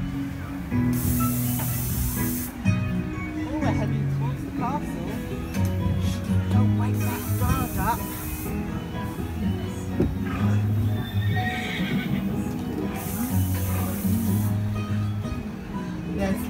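Ride soundtrack music playing steadily, with a horse whinnying sound effect. Three short bursts of hissing come about six seconds apart.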